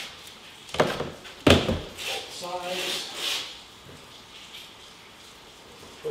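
Two sharp thumps on bare wooden stair treads, under a second apart, as a person steps down and sits on a step, followed by a soft rubbing scrape.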